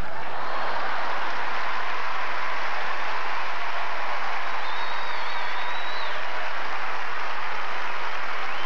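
Arena crowd applauding steadily, with a high wavering whistle rising above the clapping about five seconds in.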